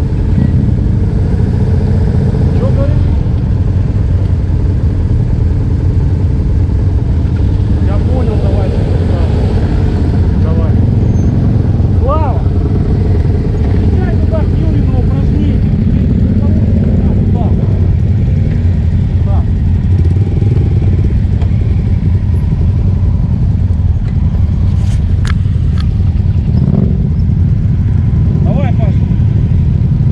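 Motorcycle engines idling steadily close by, with faint voices in the background.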